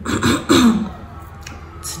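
A woman clearing her throat twice in quick succession, her throat sore from COVID-19.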